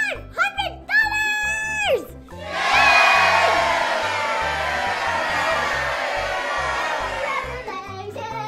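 A girl's excited shrieks for the first two seconds, then a crowd cheering for about five seconds, over background music.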